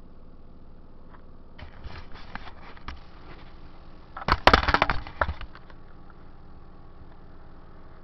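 Handling noise: a spell of clicks and rustling, then a loud crackling burst about four seconds in, as a DVD disc and its plastic case are handled close to the microphone.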